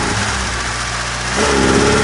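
Old Fiat's carburettor petrol engine running warm with the choke off, fitted with a new coil and condenser. The engine note lifts near the end.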